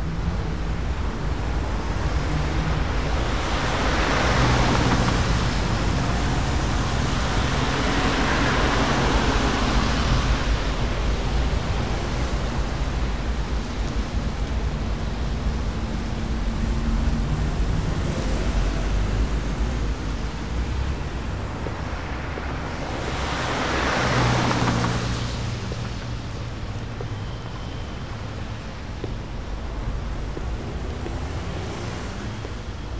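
A steady rushing, rumbling noise with a faint low hum, swelling louder about four seconds in, again around nine seconds, and once more near twenty-four seconds.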